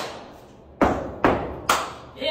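Cowboy boots stomping out a beat on the floor: three hard hits about half a second apart, after a hit dying away at the start.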